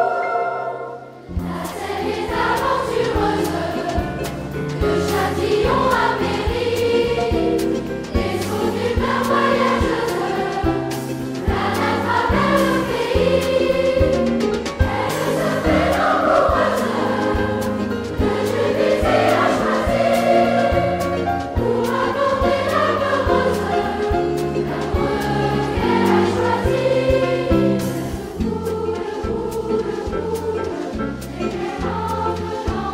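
Children's choir singing with accordion accompaniment, which resumes after a brief lull about a second in; the accordion holds sustained low bass notes under the voices.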